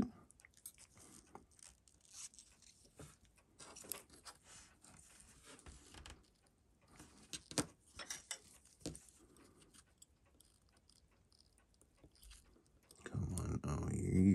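Faint, irregular small clicks and scrapes of steel tweezers and fingertips handling a watch movement clamped in a movement holder, with a few sharper clicks around the middle.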